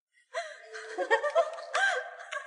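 Young people laughing and giggling together in quick, bouncing bursts, starting suddenly about a third of a second in.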